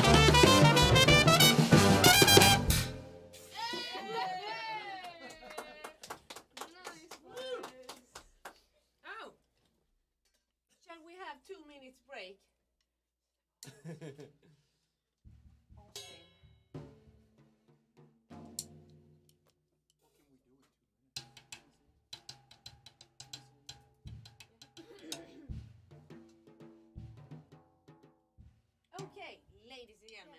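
A small swing jazz band playing: a trumpet lead with saxophones, trombone, upright bass and drum kit. The music stops sharply about three seconds in, leaving faint talk and scattered small knocks.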